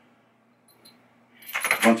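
A few faint clinks of loose metal bolts in a hand, then a brief metallic jingle as a man starts to speak near the end.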